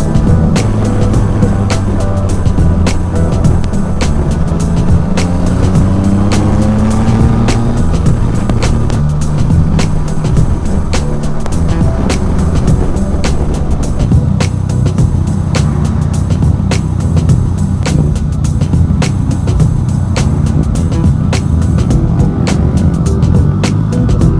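Yamaha Tracer 900 GT's three-cylinder engine running under way, its pitch rising as it accelerates about four to eight seconds in. Background music plays over it.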